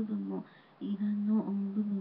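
A voice praying aloud in a rapid, flat, chant-like monotone, with a brief pause about half a second in.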